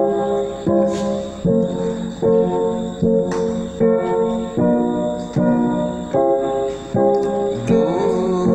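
Electronic keyboard playing block chords of a 1–5–6 progression in F major with both hands, one chord about every 0.8 seconds, each struck and held until the next.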